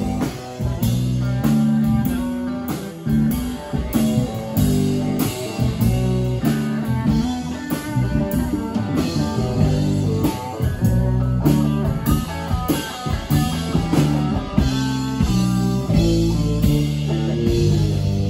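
Live rock band playing an instrumental passage: electric guitar playing a busy lead line of quickly changing notes over electric bass and a drum kit keeping a steady beat.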